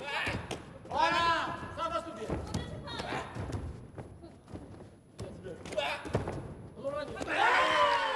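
Taekwondo sparring in a reverberant hall: scattered thuds of kicks and feet striking on the mat and padded body protectors, with loud shouting voices about a second in and again near the end.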